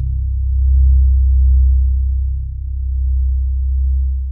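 Ambient background music closing out: a low, sustained drone that slowly swells and eases in loudness.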